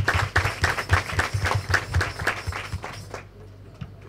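A group of people applauding, a dense patter of hand claps that dies away about three seconds in.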